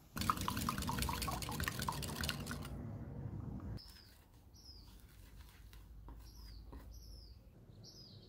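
Rapid clinking and scraping of a utensil mixing wet scone ingredients for about three and a half seconds. It stops abruptly and gives way to quiet soft stirring with several faint high chirps.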